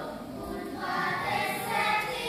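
A group of children's voices singing a folk song together in unison, with a brief lull between phrases near the start before the singing picks up again.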